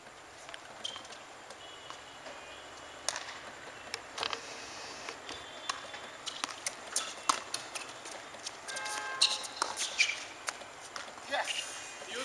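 Tennis point being played on a hard court: a scattered series of short knocks from racket strikes and ball bounces, with faint distant voices in between.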